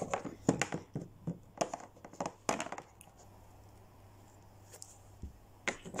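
Small plastic Littlest Pet Shop figurines handled and set down on a tabletop, a run of light clicks and taps that stops about halfway through.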